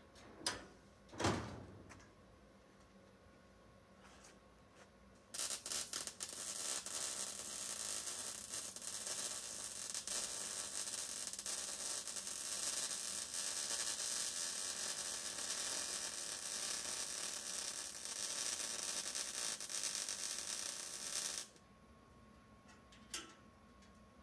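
Wire-feed (MIG) welder arc crackling in one continuous run of about sixteen seconds, tacking and welding a steel plate onto the hood latch bracket; it starts about five seconds in and cuts off abruptly. Two short knocks come just before.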